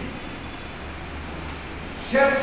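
A steady low background rumble with a faint hiss, with no distinct events.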